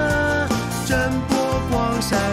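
Cheerful children's cartoon song: a voice singing a melody over a bouncy instrumental backing.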